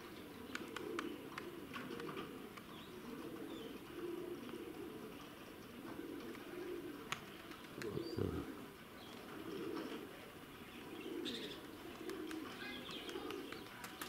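Domestic pigeons cooing, low warbling calls repeating about once a second, with a few faint higher chirps in between. A brief, slightly louder low sound comes about eight seconds in.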